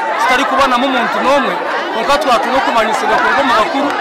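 Speech: a man talking, with other voices overlapping.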